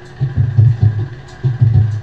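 Intro of a pagode backing track: a low drum and bass beat pulsing in a steady rhythm, with little higher-pitched sound over it, just before the cavaquinho and voice come in.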